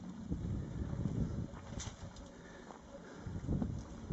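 Quiet outdoor ambience: a low rumble of wind on the microphone, with a brief faint high chirp about halfway through.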